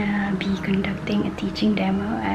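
A woman speaking: only speech, with no other sound standing out.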